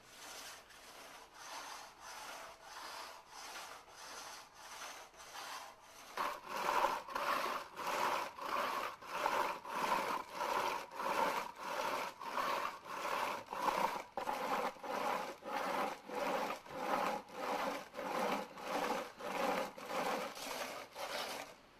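Rhythmic back-and-forth rubbing by hand on a lacquerware object, polishing its plastered surface smooth, about two strokes a second. The strokes grow louder about six seconds in.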